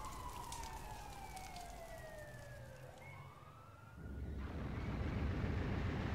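Fire-engine siren sound effect wailing, falling slowly in pitch and then sweeping back up before it fades. From about four seconds in, a steady rushing noise takes over.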